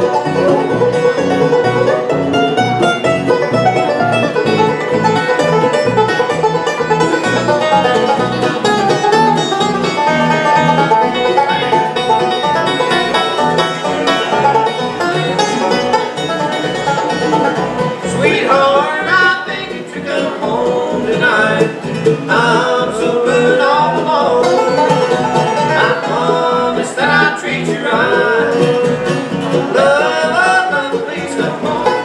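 Live bluegrass trio of five-string banjo, mandolin and acoustic guitar playing a song at a steady, full level, with the banjo's rolling picking to the fore.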